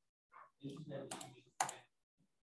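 Quiet clicks and taps on a computer under a faint murmured voice, with one sharper click near the end.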